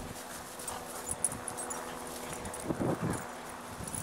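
Two dogs play-fighting, with scattered light scuffling and clicks and one brief, loud growl about three seconds in.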